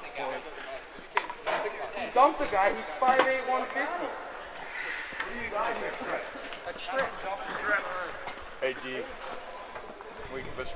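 Indistinct voices of players and coaches talking and shouting on an ice hockey bench, broken by several sharp knocks and slaps, most of them in the first four seconds.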